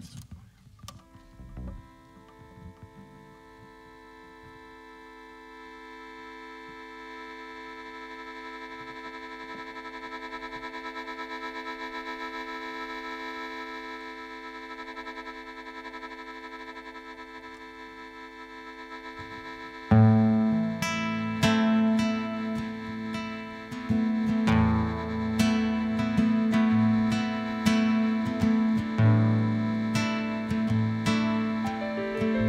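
Live band music: a held, droning chord swells slowly for about twenty seconds, then the full band comes in suddenly and loudly with strummed guitar and bass.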